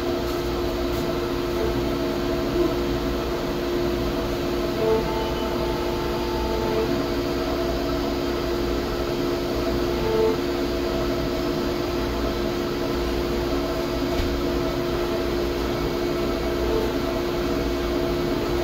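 Steady mechanical hum of workshop machinery running, with a few brief higher tones.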